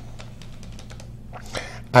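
Faint, scattered light clicks over a steady low hum during a pause in speech.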